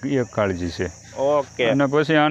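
A man speaking with a short pause in the middle. Behind him a steady high-pitched drone of insects runs on without a break.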